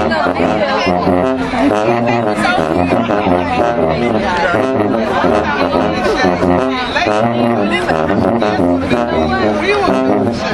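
Marching band sousaphones playing a repeating bass line with drums, under loud crowd chatter and shouting voices.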